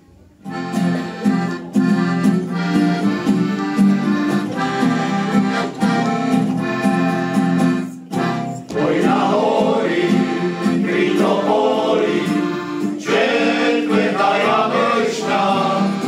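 An accordion plays an introduction, starting about half a second in. After a short break at about eight seconds, a male choir comes in singing over the accordion.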